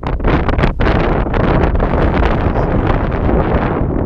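Wind buffeting a GoPro Hero 4's built-in microphone, a loud, steady rumbling noise with no let-up.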